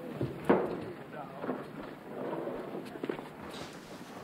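Indistinct background voices murmuring, with a sharp knock about half a second in and a lighter knock about three seconds in.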